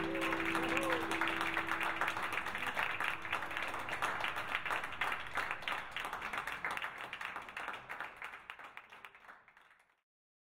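Applause from a small audience, gradually dying away to silence near the end. The last classical guitar chord rings under it in the first second or so.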